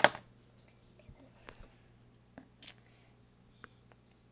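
A few short, separate scratches of a coloured pencil on sketchbook paper, with small clicks and taps between them; the clearest strokes come a little past halfway and near the end.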